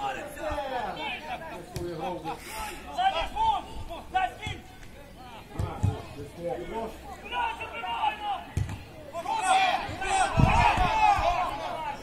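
Untranscribed voices talking and calling out, busiest near the end, with a few dull low thumps in the second half.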